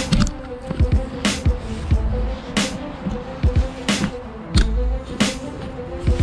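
Background electronic hip-hop beat: deep falling bass-drum drops and a sharp snare hit about every 1.3 seconds over a steady held synth note.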